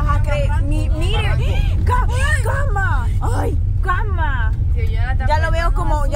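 People talking over the steady low rumble of a microbus driving on a dirt road, heard from inside the cab.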